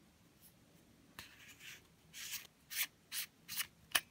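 Tailcap of a WOWTAC A1 aluminium flashlight being unscrewed by hand, its threads rasping in about six short, faint strokes, with a sharp click near the end.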